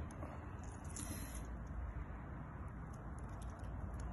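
Quiet room tone with a steady low hum and a few faint clicks and rustles of a plastic 16 amp plug and its cable being handled while the cores are fitted.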